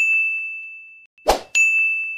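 Animated end-card sound effects: a bright, single-pitched chime ding fading away over about a second, then a short swish and a second identical ding about a second and a half in, marking the subscribe button being clicked and the notification bell ringing.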